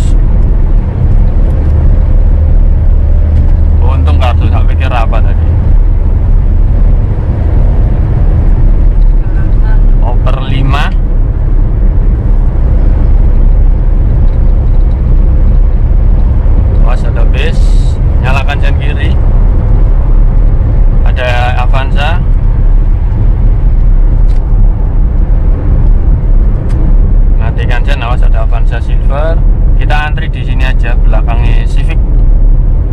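In-cabin sound of a Suzuki Karimun Wagon R's 1.0-litre three-cylinder engine and tyres at highway speed: a loud, steady low drone and road rumble.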